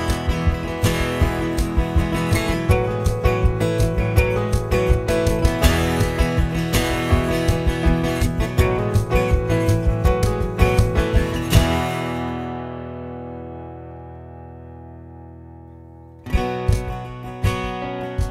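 Acoustic guitar strumming over a steady cajon beat, ending on a final chord that rings out and fades over about four seconds. Near the end, acoustic guitar abruptly starts a new tune.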